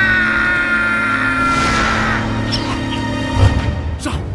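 Tense, ominous film score with a man's long, slowly falling battle-cry scream over it, which ends about two seconds in. A low thud comes near the end.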